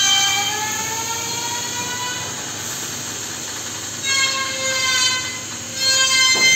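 Vacuum-forming table's vacuum system whining steadily through its hoses as a heated plastic sheet is drawn down onto a car-spoiler mould. The whine rises slightly in pitch over the first couple of seconds, and a second, higher whine joins about four seconds in.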